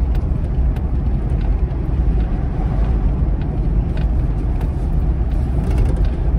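Steady low rumble of a moving car heard from inside the cabin: road and engine noise while driving.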